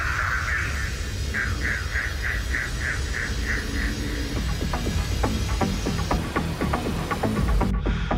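Electronic dance music from a DJ set: under a steady low bass, a high synth tone pulses about three times a second, then from about halfway a quick, dense run of clicking percussive hits takes over. Just before the end the treble drops away suddenly, as if filtered out.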